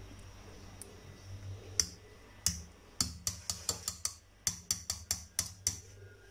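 The metal beaters of an electric hand mixer tapping against a stainless steel bowl, about a dozen sharp clicks that come quicker after about three seconds, as the whipped cream mixture is knocked off the beaters.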